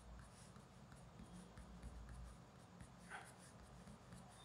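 Coloured pencil scratching faintly on paper in short strokes, with a slightly louder stroke about three seconds in.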